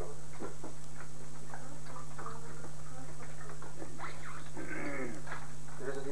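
Steady low electrical hum under scattered clinks of cutlery and tableware at a meal, with snatches of voices and a brief falling voice-like cry about four and a half seconds in.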